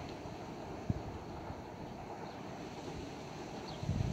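Steady wind buffeting the microphone, with one brief low thump about a second in.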